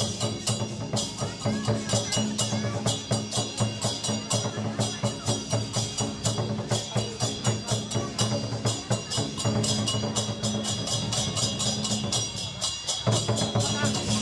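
Chinese dragon-dance percussion: drum and cymbals struck in a rapid, steady beat of about four or five strokes a second, the cymbals ringing between strokes.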